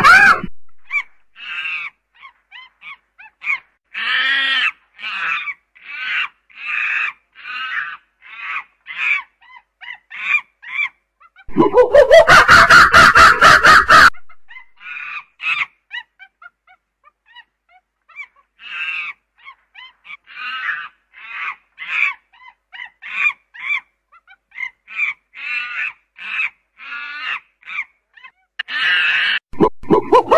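Chimpanzee calling: a long run of short, repeated calls, broken by a loud scream of about two seconds roughly twelve seconds in, and another loud scream beginning near the end.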